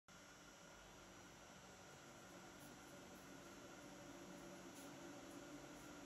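Near silence: faint steady room tone with a low hum.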